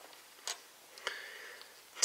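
Two small, quiet plastic clicks about half a second apart, the second followed by a short faint rustle, as the snap-on armor parts of a small plastic action figure are handled and pried off.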